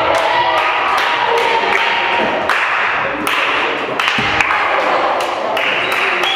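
Volleyball thuds and taps, ball on hands and floor, ringing in a reverberant sports hall, over players' voices and calls.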